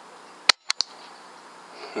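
Air rifle firing at a rabbit: one sharp crack about half a second in, followed quickly by two shorter clicks.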